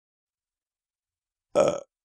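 Silence, then about one and a half seconds in, one short loud vocal sound from a person, with no words in it.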